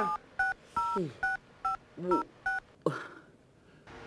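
Mobile phone keypad being dialed: about seven short touch-tone beeps in quick succession, one per key pressed, stopping about two and a half seconds in. A man's short laughs come between the beeps.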